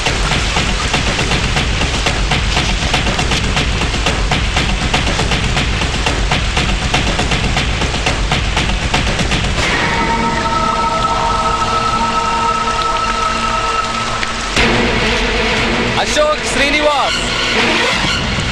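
Film soundtrack: a dense, steady rain-like rush with a deep low end under background music for about the first ten seconds. It gives way to sustained, held musical chords, with gliding pitched sounds layered over them in the last few seconds.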